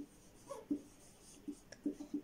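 Marker pen writing on a whiteboard: faint, short, irregular strokes as letters are drawn.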